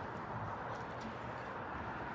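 Quiet, steady outdoor background noise with a few faint rustles.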